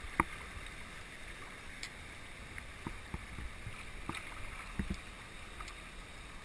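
River water rushing over shallow riffles around a moving kayak, a steady wash of noise, with a few short sharp knocks and clicks at irregular moments.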